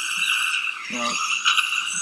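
Dental saliva ejector drawing air and fluid from the mouth with a steady hiss. A patient's short spoken 'No' comes about a second in.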